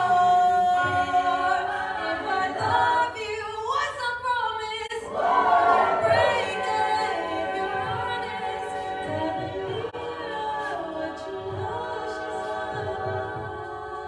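Co-ed a cappella group singing in harmony: a solo voice carrying the melody over sustained backing vocals, without instruments.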